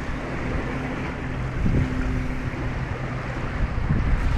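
Wind and lake water noise with a steady low hum underneath.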